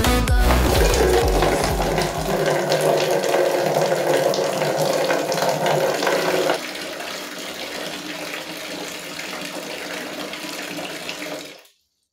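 Water running from a wall tap into a plastic spin-mop bucket, a steady rushing that gets quieter about halfway through and stops abruptly near the end as the tap is shut off.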